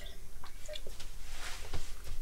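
Quiet mouth sounds of someone tasting pesto off a fingertip, with a few faint clicks.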